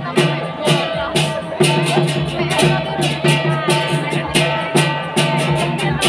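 Lion dance accompaniment: a drum beating a repeated pattern with frequent sharp cymbal crashes, several to a second, over a steady ringing tone.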